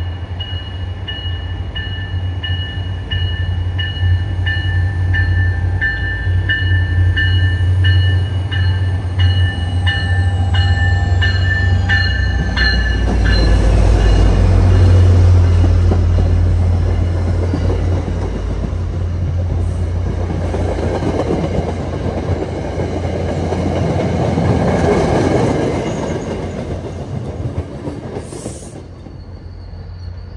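A diesel-hauled MBTA commuter train approaches and passes. At first a grade-crossing bell rings about twice a second over the train's rumble. The locomotive passes with a loud rumble about halfway through, then the coaches clatter by on the rails, and the sound fades as the train pulls away.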